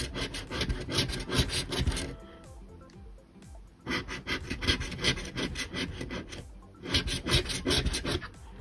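A coin scraping the silver coating off a scratch-off lottery ticket in quick rapid strokes, in three spells with short pauses between.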